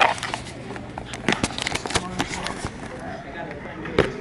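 Smooth river stones clicking and knocking against each other and against a clear plastic jar as they are handled, in an irregular series of sharp clicks.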